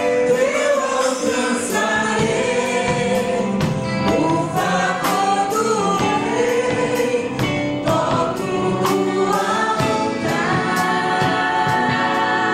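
Live gospel praise group: several voices singing together on microphones over a band with electric guitar and keyboard, with a steady beat.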